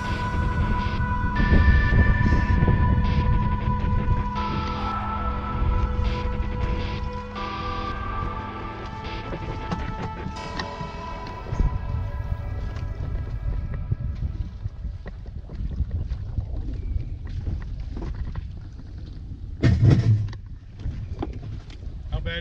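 Background music with steady held notes that fades out about halfway through, leaving wind on the microphone and the low rumble of a truck backing a bass boat trailer down a rocky bank. A single loud thump comes near the end.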